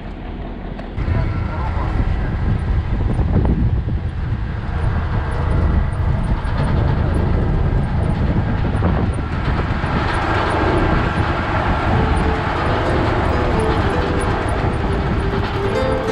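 Heavy truck driving on a gravel road, heard from inside the cab: a steady engine and road rumble that grows louder about a second in.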